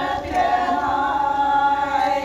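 A group of Naga women singing together without instruments, holding one long sustained note that they let go near the end.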